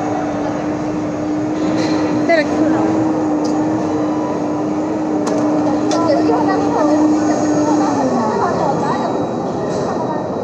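A steady mechanical hum that drops in pitch and fades out about eight seconds in, over background chatter. A few light clicks and taps come through now and then.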